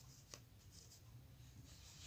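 Near silence, with a faint rustle and a small click in the first half second as a tarot card is laid down on a cloth-covered table.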